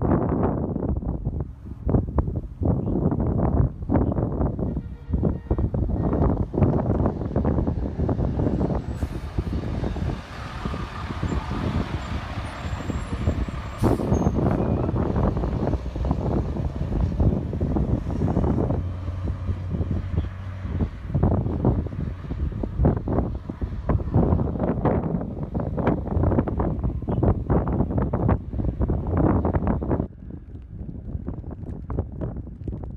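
Wind buffeting a phone microphone in gusts, with a fire department water tanker truck's engine running as it pulls past, louder and brighter around the middle.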